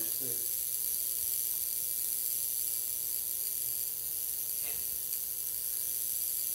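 Tesla coil running with a steady electrical buzz and high hiss, holding two even tones throughout.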